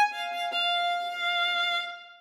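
Background music led by a violin, ending on a long held note that fades away near the end.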